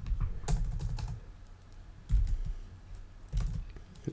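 Computer keyboard typing: keystrokes come in three short bursts, the first about a second long at the start, then brief ones around the middle and near the end.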